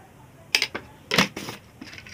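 Two sharp metal clinks, a little over half a second apart, as a steel spoon knocks against a steel mixer-grinder jar while salt is spooned in; the second clink is the louder.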